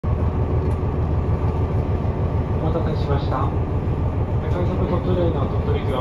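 KiHa 126 diesel railcar's engine idling steadily with the car standing still, heard from inside the cabin as a constant low rumble.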